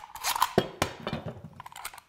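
Clicks and knocks of a Bessey Revo parallel jaw clamp being handled, its jaw sliding and clacking along the bar, in a quick irregular string.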